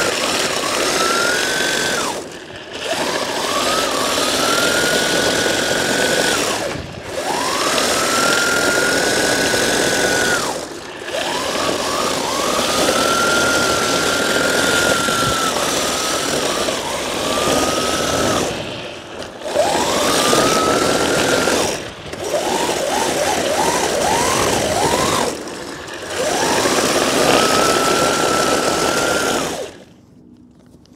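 Drift kart's engine revved hard and held, over and over in about seven runs with short let-offs, while its hard PVC drift sleeves slide and scrub on the asphalt in burnouts to break the new sleeves in. The sound cuts off at the end.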